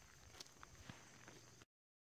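Near silence: faint outdoor background with a few faint ticks, which cuts off abruptly to dead silence about one and a half seconds in.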